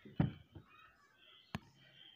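Handling noise on a wooden workbench: a dull knock just after the start, then a single sharp click about one and a half seconds in.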